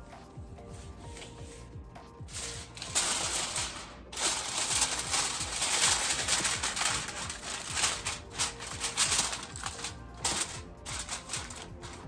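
Sheet of aluminium foil crinkling and crackling as it is spread and pressed down over a baking dish, starting about two seconds in and easing off near the end. Faint background music plays underneath.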